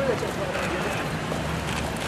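Footsteps of a group of men walking on wet paving, mixed with voices of people around them.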